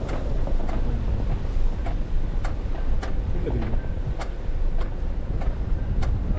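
Car driving slowly on a snowy road: a steady low rumble of engine and road noise, with a sharp click repeating evenly about every 0.6 seconds.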